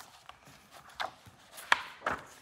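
Pages of a paper magazine being handled and turned by hand: two short, sharp paper flicks, one about a second in and a louder one near the end.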